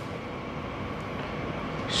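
Steady, even background hiss of room noise with no distinct event.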